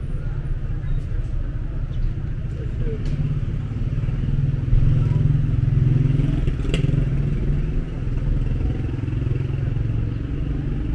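City street ambience: a steady low rumble of road traffic that swells for a few seconds around the middle, with a sharp click about two-thirds of the way in.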